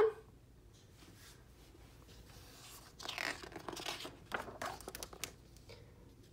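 A picture book's paper page turned by hand: after about three seconds of near silence, a run of paper rustles and crinkles lasting a couple of seconds as the page turns and is pressed flat.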